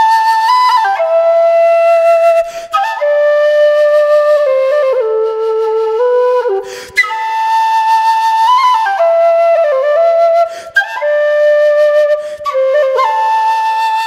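James Dominic PVC Irish low whistle in low G playing a slow melody of long, slurred notes, with short breaks for breath every few seconds.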